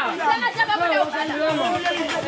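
Several children's voices at once, chattering and calling out over one another.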